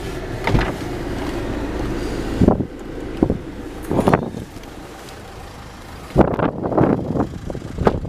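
Inside a small car, a steady low noise stops with a clunk about two and a half seconds in. Several knocks follow, then a loud clunk with rattling just after six seconds, like a car door being shut.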